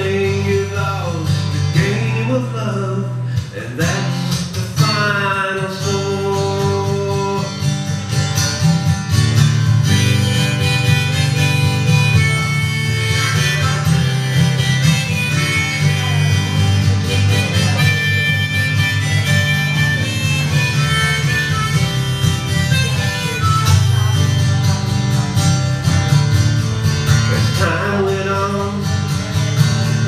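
Instrumental break between verses of a live country-folk song: acoustic guitar strumming steadily under a lead melody with bending, sliding notes.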